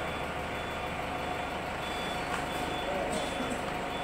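A vehicle's reversing beeper sounding faint, short high beeps over a steady low hum.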